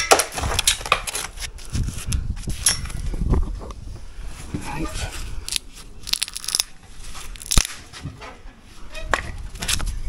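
Irregular scraping, crackling and clicking of a gloved hand picking at loose mortar and debris in the gap between brickwork and the top of a uPVC window frame, with one sharper click about three-quarters of the way through.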